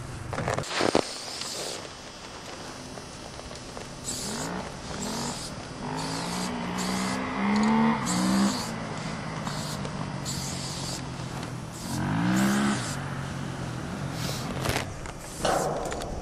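Aerosol spray paint can hissing in many short bursts as a graffiti piece is painted onto a freight car. In between come a few low pitched sounds that slide up and down, like a vehicle passing.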